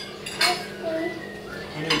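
Knives and forks clinking and scraping on plates during a meal, with a sharp clink about half a second in and another near the end.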